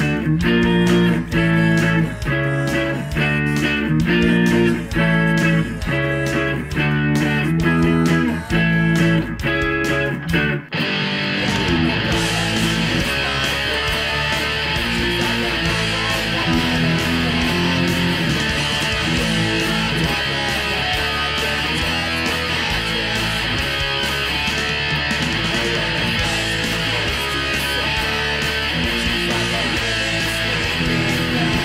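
Punk rock played on electric guitar with the band track: choppy stop-start chords for about the first ten seconds, a brief break, then fast, continuous strumming in a dense full mix.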